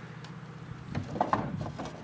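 Wooden boards being lifted out of the front of a wooden feed buggy: a few short knocks and scrapes of wood on wood, mostly in the second half.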